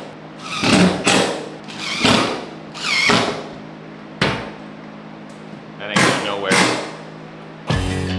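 A cordless DeWalt driver runs in about six short bursts, driving screws to fix steel pegboard wall panels, over faint background music. Loud music comes in just before the end.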